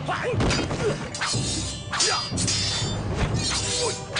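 Swords clashing in a film fight: a quick series of sharp metallic strikes with short ringing, several a second, over background film music.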